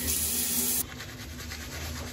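Water spraying from a shower head as a bright, steady hiss that cuts off abruptly about a second in. It is followed by the quieter scrubbing of a toothbrush on teeth.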